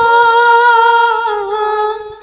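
Female voice humming a long, high held note in the opening of a Gujarati bhajan. The note wavers at first, then holds steady, stepping down to a slightly lower note about one and a half seconds in, over faint soft drum strokes.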